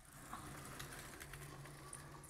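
Sliding lecture-hall chalkboard panel being pushed up along its tracks: a faint, steady rumble with a few light clicks.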